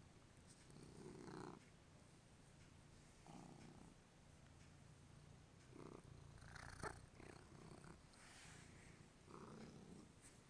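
Domestic cat purring while being petted: a faint, steady low rumble that swells louder about every two to three seconds.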